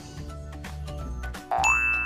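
Background music with a beat, broken about one and a half seconds in by a loud cartoon 'boing' sound effect: a tone sliding quickly upward, then a steady high ping that rings on.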